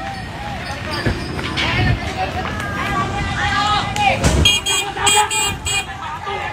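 Men shouting in a street brawl. In the last second and a half a horn gives about four quick, high-pitched toots.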